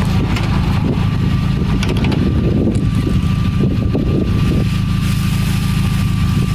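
Emergency-medicine van's engine idling, a steady low rumble, with a thin steady high tone joining about a second in.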